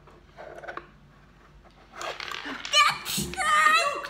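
Excited, high-pitched voices exclaiming in the second half, after a quiet first two seconds.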